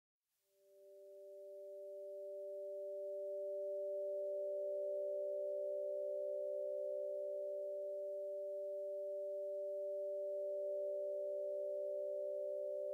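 Sustained electronic drone of two or three pure, steady tones that fades in over the first few seconds and then holds: the soft opening of a musical theatre song's accompaniment.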